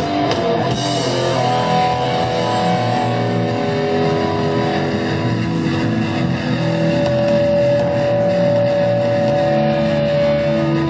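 Rock band playing live with electric guitar, long notes held and ringing out over the band, with no singing.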